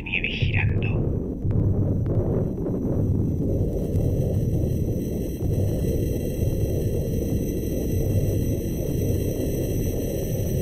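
Dense, steady low rumble of a sound-designed storm, with faint steady high electronic tones above it.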